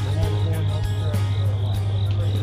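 Steady low drone of a diesel locomotive approaching, with people's voices over it.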